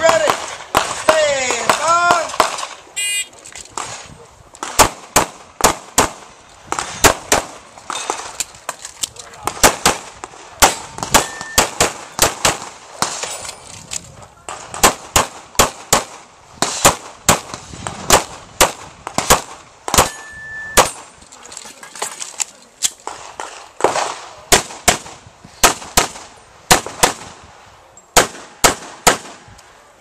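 A shot-timer start beep about three seconds in, then a competitor's handgun firing a long course of fire: sharp pistol shots, mostly in quick pairs, in strings broken by short pauses, until near the end.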